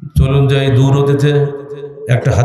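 A man reciting a hadith in a drawn-out, chant-like voice, holding a fairly steady low pitch, amplified through microphones.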